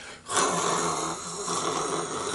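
A man imitating with his mouth a steady rushing hiss of air, lasting about two seconds: the rush of compressed air leaking past a closed exhaust valve that a leaking valve makes when heard through a tube.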